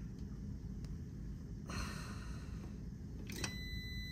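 A clamp meter's continuity beeper gives a thin, steady high tone near the end as the test leads touch the new contactor's terminals. The meter reads near zero ohms across the pole, a sign of good contacts. Beneath it is a low steady hum, with a brief soft rustle of handling about halfway.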